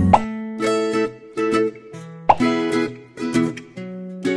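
Bright background music for children with plucked, ukulele-like notes, broken by two quick rising 'plop' sounds, one just after the start and one a little over two seconds in.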